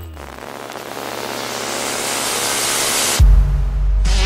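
A white-noise riser in a dance-music mix, swelling steadily louder and brighter for about three seconds between two songs, then cut off by a deep bass boom near the end.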